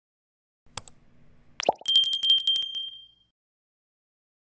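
Subscribe-button animation sound effects: a click a little under a second in, then a short pop, then a high bell ding with a fast trilling rattle that rings for about a second and a half and fades out.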